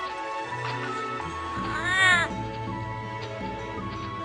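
A cat's meow, one call rising then falling in pitch about two seconds in, over background music.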